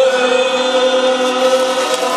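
Mixed choir of men and women holding one long chord, the closing note of a Vietnamese du ca song.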